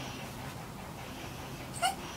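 A chiweenie dog gives one short, high whimper near the end, over quiet room tone.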